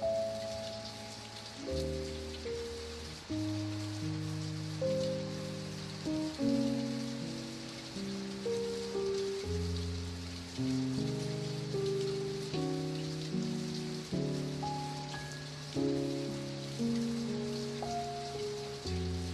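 Steady rain patter mixed with slow, soft instrumental music, a new chord or note struck every second or so and left to fade.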